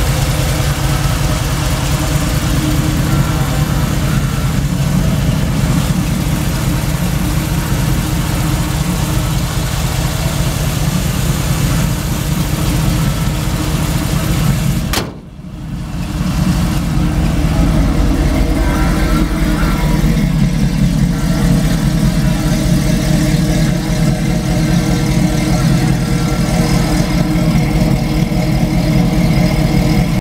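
A 350 GM crate V8 in a pro street pickup idling steadily. The sound dips for a moment about halfway through, then the idle goes on.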